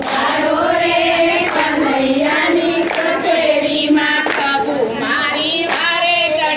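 A group of women singing a Gujarati devotional bhajan in unison, keeping time with hand claps about every one and a half seconds.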